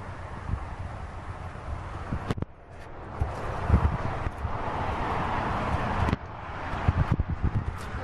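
Wind and handling noise on a handheld camera's microphone as it moves around the car: an even rush with low thumps, a sharp click about two and a half seconds in, and the rush swelling in the middle.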